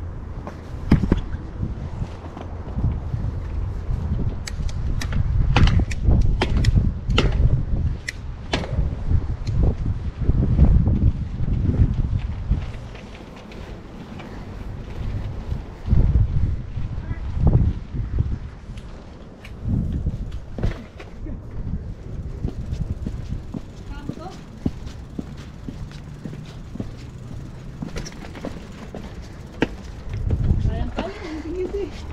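Mountain bike rolling downhill over stone paving, its frame and parts rattling with many sharp clatters for the first several seconds, then running quieter over a dirt path. Wind rumbles on the handlebar camera's microphone.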